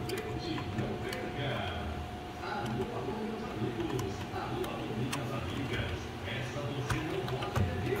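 Light, scattered clicks and handling noise of small plastic parts being pressed together by hand: a toy car's front wheel and steering linkage being snapped into place.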